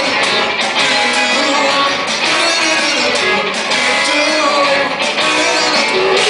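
Live rock band playing loudly: electric guitar over a drum kit.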